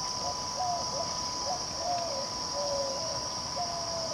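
Outdoor evening chorus of animal sounds: a steady high-pitched insect drone with a thin steady tone beneath it, and short, slightly falling lower calls repeating about twice a second.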